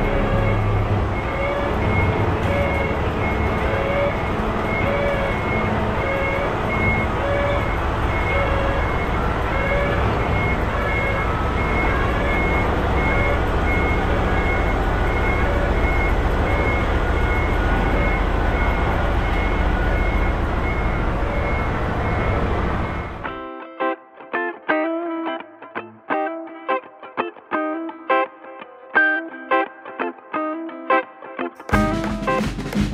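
A semi-trailer truck reversing, its engine running low and steady under a back-up alarm beeping about three times every two seconds. About 23 seconds in, this cuts off suddenly and gives way to plucked guitar music.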